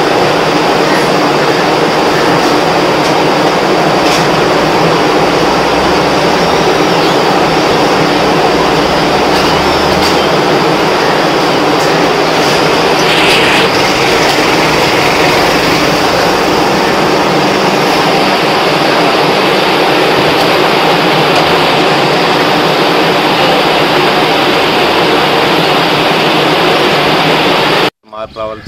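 Waste segregation machine with an inclined cleated conveyor belt running: a loud, steady mechanical din with an even hum underneath.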